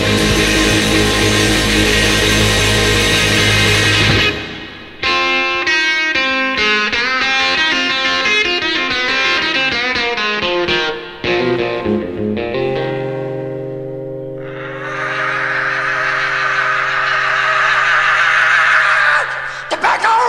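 Heavy blues-rock band recording with distorted electric guitar. A full chord rings for about four seconds, then comes a fast run of single guitar notes, then long held low notes under a swelling high wash that builds into the next loud section.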